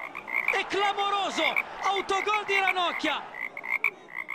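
Frogs croaking: a quick, steady run of short high-pitched chirps, with two spells of louder, longer croaks that rise and fall in pitch, starting about half a second and two seconds in.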